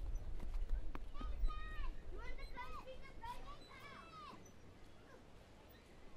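Children's voices calling out in short, high shouts that rise and fall, clustered in the first two-thirds and fading toward the end, over a steady low outdoor rumble.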